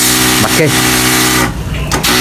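A 16-litre sprayer misting fungicide from its nozzle: a steady hiss of spray over a steady pump hum. The hiss cuts off suddenly about one and a half seconds in, as the nozzle is shut, while the hum carries on.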